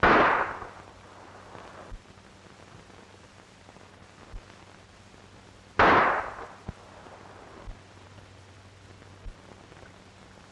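Two revolver shots about six seconds apart, each a sharp loud crack that rings out and dies away over about a second.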